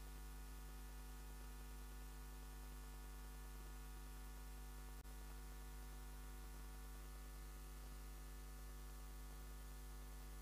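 Faint, steady electrical mains hum, a low buzz with many overtones, with one brief click about halfway through.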